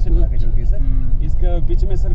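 A car moving along a road: a steady low rumble, with people talking over it.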